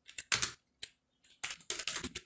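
Computer keyboard being typed on: irregular runs of key clicks with short pauses between them, the busiest run in the second half.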